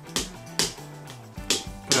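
A metal spoon clinking and scraping against a glass bowl, a few sharp knocks, while mashing banana and ice cream. Background music with steady low notes runs underneath.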